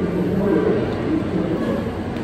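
Indistinct background chatter of people, with no words clear.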